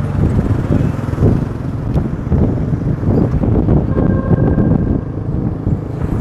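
Wind buffeting the microphone while riding along a road, over a steady engine and road rumble.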